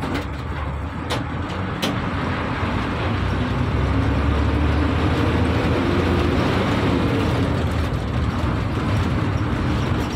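Bus engine and road noise heard from inside the cabin, a steady low drone that grows louder over the first few seconds and then holds. A few short clicks sound in the first two seconds.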